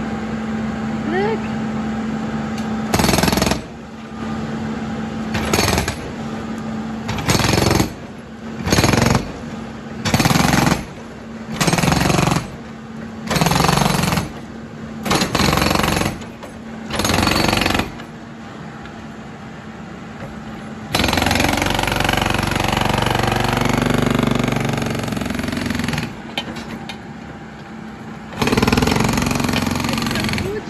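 Hydraulic impact hammer on a Caterpillar backhoe loader's boom breaking up street pavement, firing in about ten short bursts of a second or so, then a longer run of about five seconds and another burst near the end. The backhoe's engine runs steadily beneath it between bursts.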